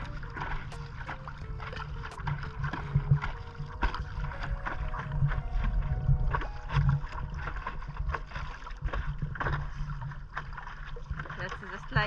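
Water splashing and lapping around a paddleboard as it is paddled, with short splashes scattered throughout over a steady low rumble.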